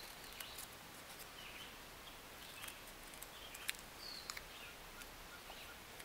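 Scissors snipping a pie-shaped wedge out of an index-card circle: a scatter of faint sharp clicks and cuts of the blades. Two brief high chirps are heard, one at the start and one about four seconds in.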